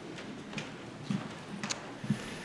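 A congregation sitting down in wooden pews: soft scattered thuds about every half second over a faint rustle of clothing and shuffling.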